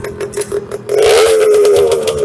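A motorcycle engine running with a rapid, irregular popping beat, getting louder as it is revved about a second in.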